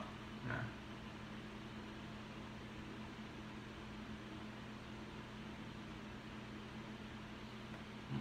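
Steady low hum with a faint hiss underneath: the background sound of a small room, with no other sound rising above it.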